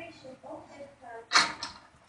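A sharp clatter of a plate knocking against a stainless steel mixing bowl as chopped onions are tipped in, with a smaller knock just after, about one and a half seconds in.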